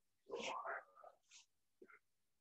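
A brief, faint vocal sound from a person, followed by a short small sound near the end.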